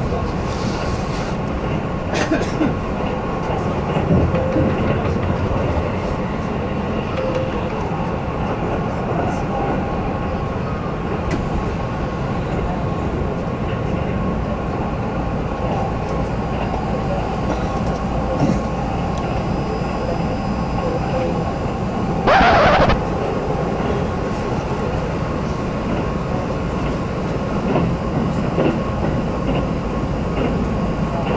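Keihan electric train running, heard from inside the passenger car: a steady running noise, with one short, loud burst of noise about two-thirds of the way through.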